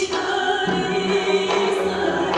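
Armenian folk song performed live: a woman singing long held notes over a traditional folk instrument ensemble.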